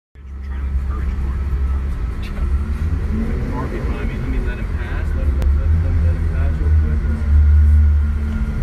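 Mercedes-Benz S600's V12 engine with an aftermarket exhaust, running with a steady low rumble as the car rolls slowly, heard from inside the cabin. It swells a little louder near the end.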